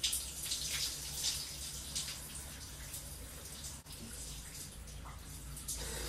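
Shower water running steadily and spattering on a person's head and hair as hair dye is rinsed out, inside a glass-doored shower cubicle.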